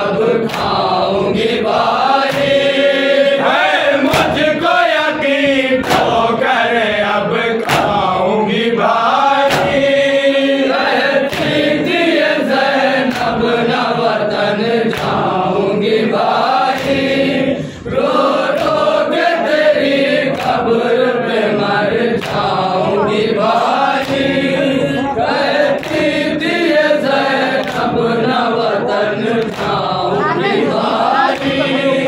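Men's voices chanting a nauha (Shia lament) through a microphone, with a group joining in, kept in time by regular slaps of chest-beating (matam). The chant dips briefly a little past halfway.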